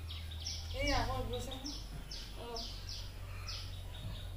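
A bird calling over and over with short, high, falling chirps, about three a second. A brief wavering voice sound comes about a second in.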